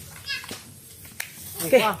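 People's voices calling out: a short high-pitched call early, a single sharp click about a second in, then a louder spoken word near the end.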